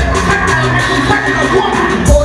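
A rapper battle-rapping into a microphone over a hip hop beat played through a PA. The beat's heavy bass drops out for these two seconds and comes back right at the end.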